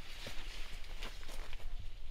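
Soft footsteps on soil with light rustling of tomato foliage.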